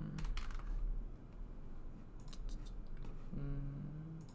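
Keystrokes on a computer keyboard: a few short runs of key clicks as a word of code is typed, with a brief hummed voice near the end.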